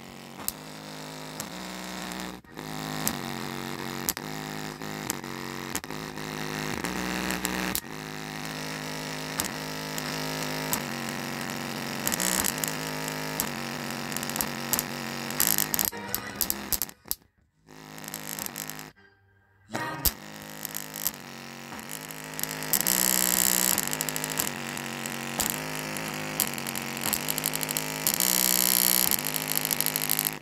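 A bare JBL GO 2 speaker driver, out of its enclosure, playing bass-heavy music hard, its cone making large excursions on a stepping bass line. The music cuts out briefly twice around the middle, and it is louder and brighter near the end.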